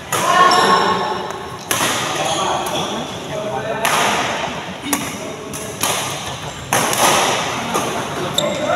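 Badminton rally: rackets striking the shuttlecock, about six sharp hits a second or two apart, each echoing briefly in a large hall.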